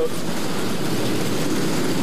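Engines of open-wheel dirt modified race cars running as several cars pass in turn, a steady dense engine noise with no single car standing out.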